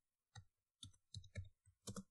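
Faint computer-keyboard keystrokes: a quick run of separate key clicks as a word is typed.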